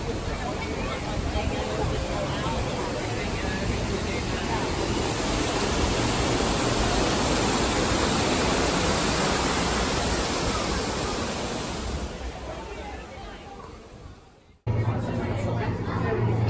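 Steady rushing hiss of a waterfall. It grows louder toward the middle, then fades, and cuts off abruptly near the end, giving way to a low hum.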